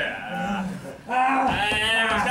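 A man's voice: a short vocal sound, then about a second in a loud, drawn-out, wavering cry lasting about a second.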